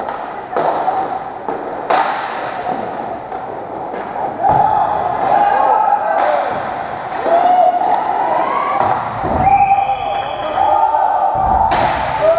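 Roller hockey play: sharp, scattered knocks of sticks and the puck striking, and hits against the rink boards. Players shout across the rink, most of all in the second half.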